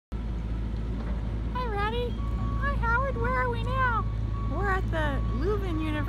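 Very high-pitched, squeaky character voice speaking, starting about one and a half seconds in, over a steady low rumble and a thin steady tone in the background.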